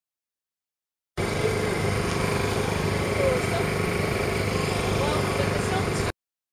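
A machine running steadily, with faint voices behind it; it cuts in abruptly about a second in.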